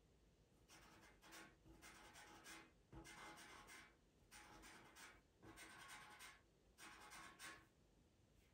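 Pastel pencil scratching faintly across textured pastel paper in a run of short, quick strokes with brief pauses between, laying in fur texture.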